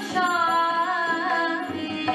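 A woman singing a Hindi devotional song (bhajan), holding one long note with a slight waver and starting a new phrase near the end, over a harmonium accompaniment with a steady low drone.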